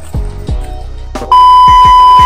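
Hip hop background music with deep bass drum hits; about two-thirds of the way in, a loud, steady, high beep tone cuts in and holds: a censor bleep laid over speech.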